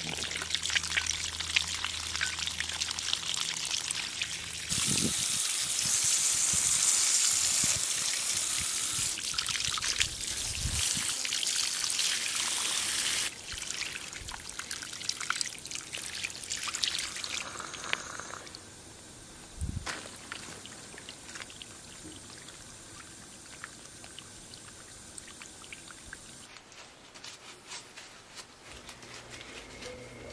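Water from a garden hose spraying into a clogged oil cooler's coolant passage under pressure to flush it out, splashing and trickling onto gravel. The flow gets louder about five seconds in, drops back around thirteen seconds, weakens further after about eighteen seconds and stops near the end.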